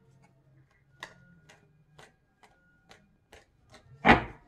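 Faint soft clicks of a tarot deck being shuffled by hand, about two a second.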